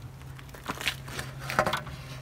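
Handling noise: a few short clicks and crackles as the solar panel's plastic cable connectors and cable are handled, a cluster of them just over a second and a half in, over a steady low hum.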